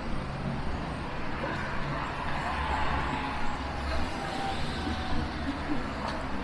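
Steady city road traffic: cars and buses running past on the street alongside, a continuous low rumble with a faint whine that falls slightly in pitch through the middle.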